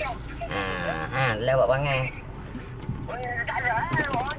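A person's voice in a long, wavering, drawn-out cry from about half a second in to about two seconds, then wavering voice again near the end, over the steady low rumble of a moving car's cabin.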